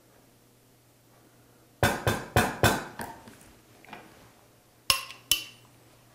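Four quick knocks as a blender jar of thick peanut sauce is tapped over a small cup to empty it, then two short ringing clinks as the jar is set down on the counter.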